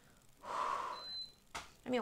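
A woman's audible intake of breath lasting under a second, then a short mouth click, with her speech starting again near the end.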